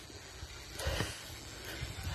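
A person breathing hard while walking, with one louder breath close to the microphone a little under a second in.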